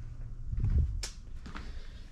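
Handling noise as the person moves about: a few soft low thumps, then one sharp click about a second in.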